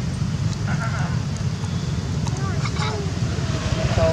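Macaques giving short, high squeaky calls that fall in pitch, in a couple of brief bouts: one about a second in and another in the second half, over a steady low rumble.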